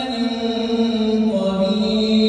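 An imam's melodic recitation of the Quran during congregational prayer: a single male voice holding long, drawn-out notes, with the melody shifting about midway.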